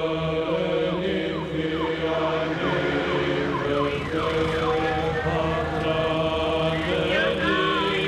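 Orthodox chanting, voices holding long sustained notes. Over it, short falling siren-like glides repeat through the first half, and a wavering high tone comes in near the end.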